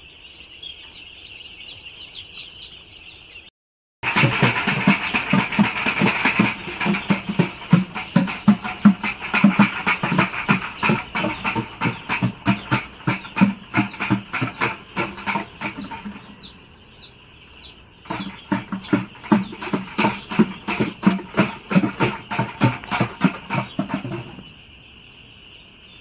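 A large flock of young broiler chicks peeping constantly. From about four seconds in, a loud, fast rhythmic beat of about three strokes a second dominates over them, stopping briefly near the end before starting again.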